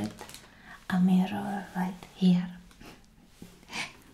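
A woman speaking softly in a whispery voice, in short phrases.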